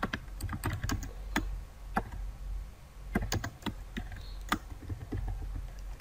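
Computer keyboard typing: a run of unevenly spaced key clicks as a short line of code is typed.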